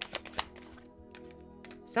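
A few quick, sharp clicks in the first half second as tarot cards are handled, over soft background music.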